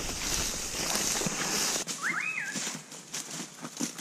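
Boots swishing and stepping through long grass, in a run of soft separate footfalls toward the end. About two seconds in, a single short animal call rises and then falls in pitch.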